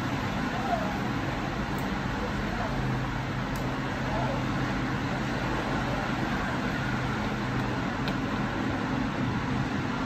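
Steady background rumble and hiss with a faint low hum and faint distant voices, at an even level throughout.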